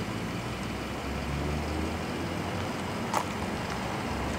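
Steady low outdoor background rumble and hiss, with one short click about three seconds in.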